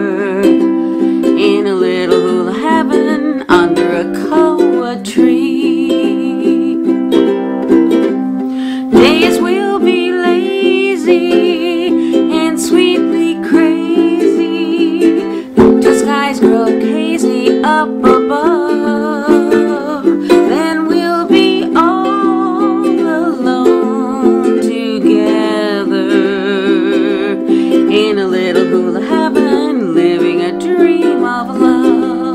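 Ukulele strumming chords in the key of C while a woman sings along, her held notes carrying a light vibrato.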